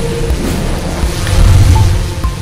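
Sound effect of an animated logo reveal: a loud rushing noise over a deep rumble, swelling to its loudest about one and a half seconds in.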